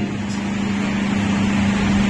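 A steady low hum at one pitch over background room noise, with no speech.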